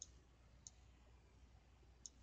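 Faint computer mouse clicks in near silence: a short click at the start and another about two-thirds of a second later.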